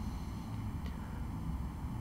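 A pause in speech: quiet room tone with a low steady hum and one faint click just under a second in.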